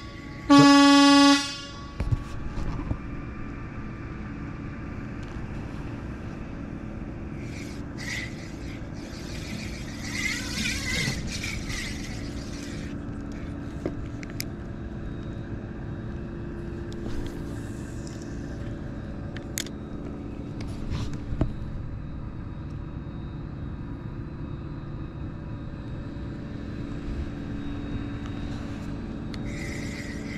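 A loud horn blast on one steady pitch about half a second in, lasting about a second, right after an identical blast. After it comes a steady low outdoor hum with a few faint passing noises.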